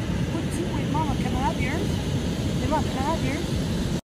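Wind noise on the microphone and surf, with background voices in two short spells.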